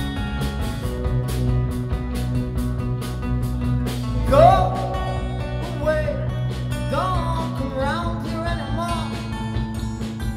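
Live band playing: strummed acoustic guitar over an electric guitar with a strong low end, and a voice comes in singing about four seconds in, in short phrases.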